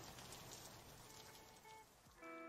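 Near silence: a faint steady hiss in the gap between two music tracks.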